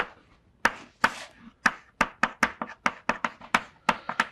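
Chalk tapping and scraping on a blackboard as an equation is written: a quick, irregular run of sharp clicks, several a second, coming faster in the second half, with a brief scrape just after one second in.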